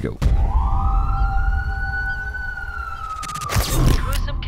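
Horror film trailer soundtrack: one long wailing tone that rises over the first second and then slowly sinks, over a deep steady rumble. A cluster of sharp hits comes near the end.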